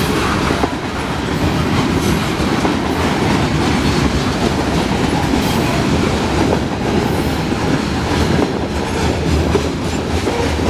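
Covered hopper cars of a freight train rolling past close by: a steady rumble of steel wheels on rail with scattered clicks.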